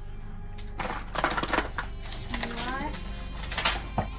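Felt-tip marker scratching and scribbling on spiral-notebook paper in bursts of quick strokes, over soft background music.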